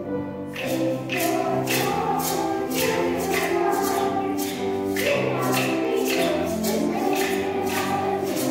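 Children's choir singing a song over instrumental accompaniment. About half a second in, a sharp percussion beat comes in and keeps time at roughly two strokes a second.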